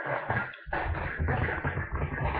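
Electric fan's airflow buffeting the microphone at close range: a rough, rumbling noise that dips briefly about half a second in and then continues.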